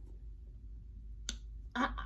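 A single short, sharp click a little over a second in, against quiet room tone; a girl's voice starts just after it.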